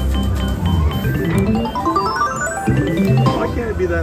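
Electronic sound effects of a multi-play video poker machine. A quick run of identical beeps as the drawn cards fill in, then a stepped scale of tones climbing in pitch as the winning hands are paid out.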